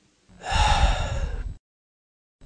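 A man's breathy gasp, about a second long, that stops abruptly.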